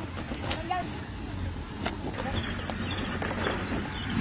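Faint voices of people talking in the distance over a low steady rumble, with a couple of sharp clicks.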